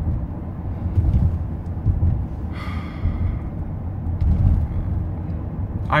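Steady low road and engine rumble heard inside a moving car's cabin, with a short breathy sound about two and a half seconds in.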